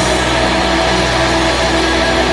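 Outro of an alternative rock recording: a loud, steady wash of sustained droning chords, with the drums dropped out.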